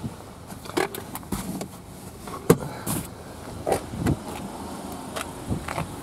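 Scattered light clicks and knocks of handling and movement around a car's open door, over a faint outdoor background.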